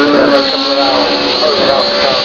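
Ford Escort's engine running hard as it spins donuts, heard under a commentator's voice on a public-address loudspeaker.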